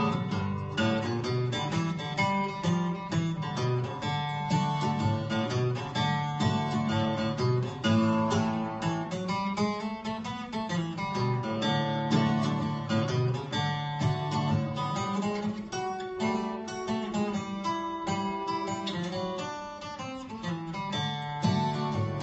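Acoustic guitar playing an instrumental break between sung verses of a country blues song, with a quick run of picked notes over low bass notes.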